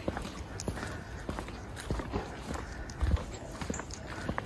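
Footsteps of a person walking along a paved park path, a run of short knocks, with a heavier thump about three seconds in.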